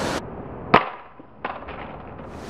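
Samsung Galaxy Note 2 dropped face-down onto concrete: one sharp crack of impact about three quarters of a second in, then a lighter clatter about half a second later. This is the impact that shatters its screen and knocks off the plastic back cover.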